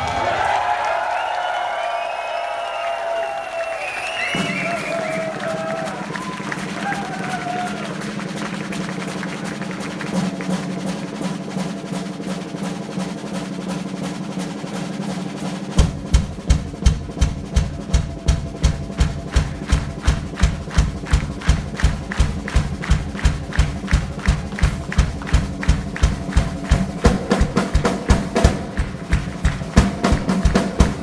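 Live metal drum solo on a full drum kit. It opens with a crowd cheering for about four seconds. Then fast, even cymbal and snare strokes play over a held low drone, and from about halfway through heavy bass-drum and tom hits join in a steady pounding beat, about three a second.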